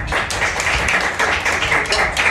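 Audience applauding: dense, irregular clapping.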